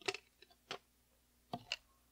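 A handful of light clicks and taps, unevenly spaced, the strongest about a second and a half in.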